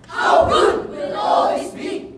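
A speech choir of many voices shouting together in unison: two loud phrases of about a second each.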